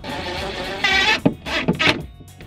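Cordless drill driving pocket-hole screws into a wooden box, its motor whining in two bursts: the first grows louder about a second in, then a brief pause and a second run near the end.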